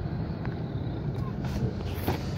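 Steady low engine and road rumble of a car, heard from inside the cabin, with a few light clicks.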